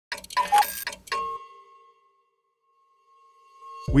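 Short logo-intro sound effect: a few quick clock-like clicks and chimes, then one bell-like tone that rings on and fades away over about two seconds.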